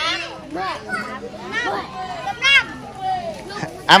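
Background chatter: several people's voices talking over one another, children's voices among them.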